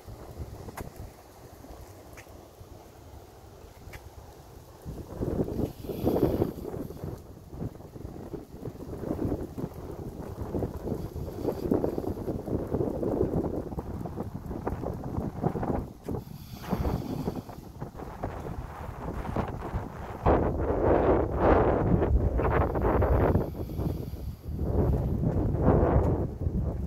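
Wind buffeting the microphone outdoors, in irregular gusts. It is light for the first five seconds, then swells and is strongest in the last six seconds.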